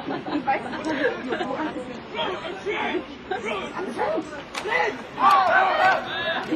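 Indistinct chatter of several voices talking over one another, with one voice louder near the end.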